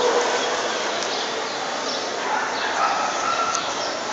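Busy indoor arena ambience: a steady background din with dogs barking in the distance.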